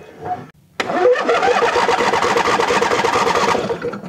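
Electric starter cranking a riding mower's 24 hp two-cylinder 724cc gas engine off a lithium LiFePO4 battery through jumper cables, in even pulses. It starts suddenly about a second in, runs for about three seconds and dies down near the end; the owner felt the cranking did not have a whole lot of juice.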